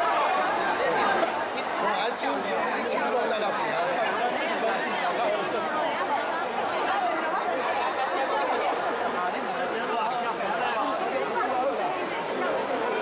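Crowd chatter: many people talking over one another at once, steady throughout, in a large indoor hall.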